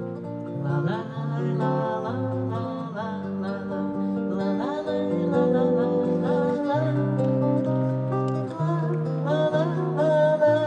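Acoustic guitar playing the accompaniment of a bard song between verses, with a held, wordless sung melody over it.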